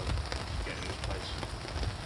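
Rain falling on the canopy of a fishing umbrella: a steady hiss of many small taps, over a low rumble.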